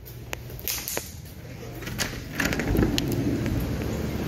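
A few light clicks and knocks, then from about halfway a steady rushing, crackling noise grows louder: a running copper still heating its wash.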